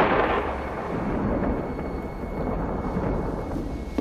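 A thunderclap followed by a long rolling rumble of thunder that slowly fades.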